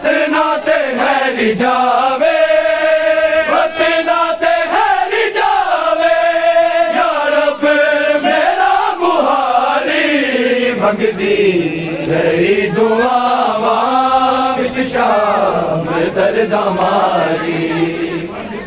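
A male voice chanting a noha, a Shia mourning lament, in long wavering notes that are each held for a second or two.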